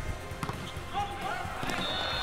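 Game sound from an indoor volleyball match: the ball struck on a spike and thudding on the court a couple of times, with players calling out, under soft background music.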